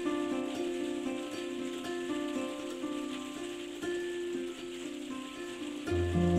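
Solo lever harp, fingers plucking a slow arpeggiated figure of ringing notes in the middle register. Deep bass strings come in right at the end.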